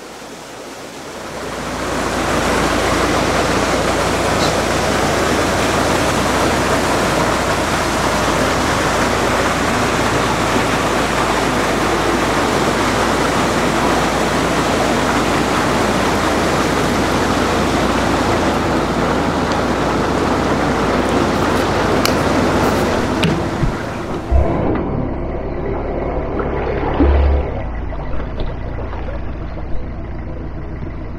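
A loud, steady rushing noise with a low hum beneath it. About 24 seconds in the rushing stops abruptly, leaving the lower hum.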